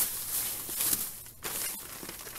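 Plastic bag and plastic rug wrapping rustling and crinkling as they are pulled open by hand, irregular, with a few sharp crackles.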